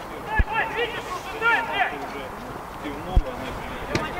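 Men's voices calling out on an outdoor football pitch, with two dull low thumps, one about half a second in and a louder one about three seconds in.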